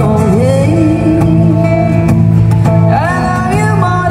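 Live acoustic guitar with a singer's voice, amplified through stage speakers: a slow song with the melody gliding between held notes over the steady guitar.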